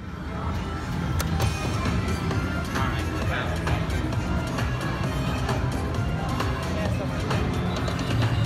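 Slot machine playing its free-games bonus music and reel-spin sound effects, fading in over the first second, with casino chatter behind it.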